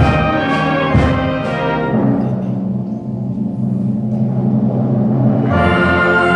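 High school concert band playing. For the first two seconds, full sustained chords are punctuated by drum strikes about every half second. The upper instruments then drop out and only low notes are held, until the full band comes back in near the end.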